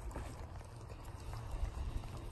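Springer spaniels moving about on a dirt bank: faint footfalls and scuffs over a steady low rumble.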